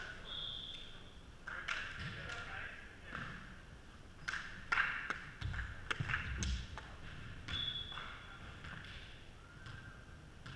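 Volleyball rally: a run of sharp ball hits and thuds in the middle, with players' voices, ringing in a gym hall.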